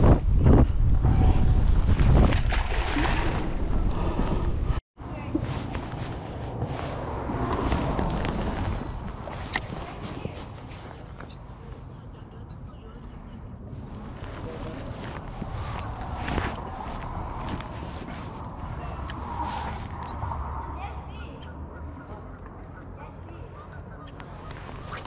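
Wind rumbling on the camera microphone, heavy for the first few seconds, then much lighter after an abrupt drop about five seconds in, with indistinct voices of people in the background.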